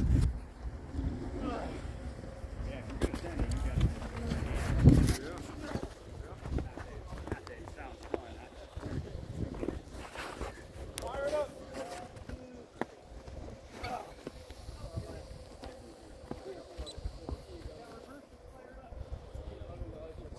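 Voices of several people talking and calling out at a distance across the open air. For the first five seconds there is a low rumble of wind buffeting the microphone.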